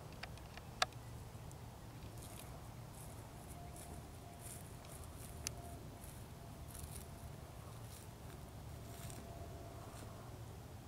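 Quiet outdoor background: a low, steady rumble with faint high hiss, a faint thin steady tone in the second half, and a few sharp clicks, the loudest about a second in.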